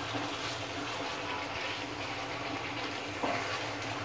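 Thick chicken masala sizzling steadily in a nonstick kadai over high flame while a wooden spatula stirs it: the bhuna stage, frying the masala once the yogurt liquid has cooked off.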